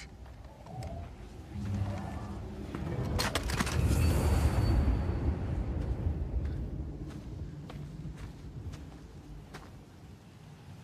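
Film sound design for a body crumbling into dust: a low rumbling swell with a cluster of crackles about three seconds in, loudest around four to five seconds, then slowly fading.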